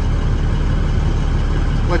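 Truck engine idling with a low, steady hum, heard from inside the cab.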